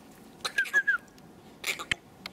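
Pomeranian puppy snuffling with its nose in the grass: short bursts of sniffing, with three quick high chirps about half a second in.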